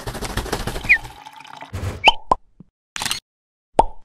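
Cartoon pop sound effects for an on-screen animation: a short rushing swoosh for the first second, then four short pops and blips, some quickly rising or falling in pitch.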